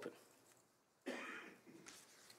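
Near silence broken about a second in by a single short, faint cough from someone in the chamber.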